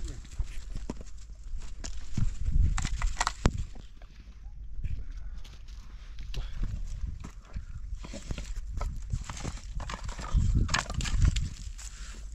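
Footsteps crunching on loose stony ground with scattered clicks and knocks, while a dog eats from a plastic tub. Heavy low thumps come about three seconds in and again near the end.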